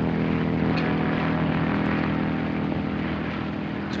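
Steady drone of the Zeppelin Hindenburg's propeller engines as heard on an old film soundtrack: several level engine tones over a low rumble, easing slightly near the end.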